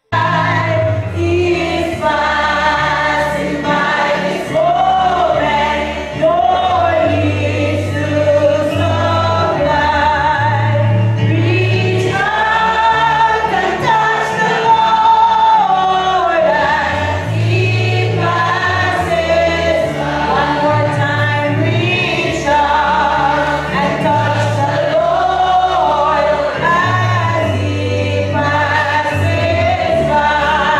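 Gospel song sung by a woman into a microphone with other voices joining, over a bass line and light percussion.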